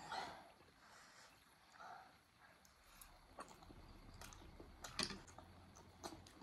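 Quiet eating sounds: faint chewing and mouth noises with a few small sharp clicks, the loudest about five seconds in.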